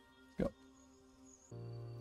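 Quiet background music of held, sustained tones that steps up in level about one and a half seconds in and then holds steady.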